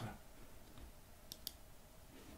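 Two faint, quick clicks at a computer a little past halfway, over quiet room tone.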